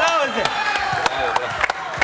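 A football being juggled on a player's feet and dropping to a hard floor: a string of short, dull knocks, a few each second at an uneven pace.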